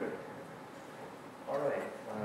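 Brief, indistinct speech: two short utterances, one at the start and one near the end, over quiet room tone.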